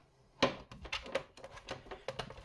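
Plastic access cover on the underside of a Dell Inspiron 3537 laptop being pried loose and lifted off: a sharp click about half a second in, then a run of small irregular clicks and ticks as its clips let go.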